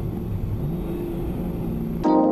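Rally car engine running, heard from inside the cabin, with a brief rise in pitch about halfway through.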